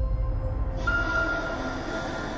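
Eerie horror-trailer sound design: a low rumbling drone under sustained, dissonant held tones, with a higher screeching tone and hiss joining about a second in.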